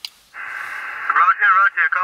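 A click, then the steady, narrow-band hiss of the Xiegu X6100 HF transceiver's receiver opening up on an SSB channel. About a second in, another station's voice comes through the radio speaker, thin and hissy, with no low end.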